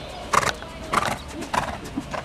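A horse's hooves striking the ground in an even rhythm, four strikes about half a second apart.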